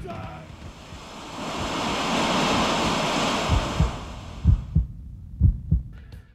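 A rushing swell of noise rises and fades, then slow low thuds in pairs, about one pair a second, like a heartbeat.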